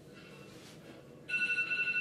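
A phone's alarm tone sounding in short repeated beeps, faint at first and louder for the last second.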